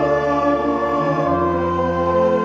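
Church organ playing sustained chords, moving to a new chord about a second in.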